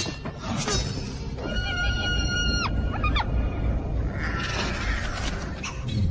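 Action film soundtrack: music with fight sound effects. About a second and a half in, a high-pitched tone holds for about a second and then bends downward as it cuts off.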